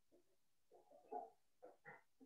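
Near silence, broken by a few faint, brief voice-like sounds about a second in and again near the end.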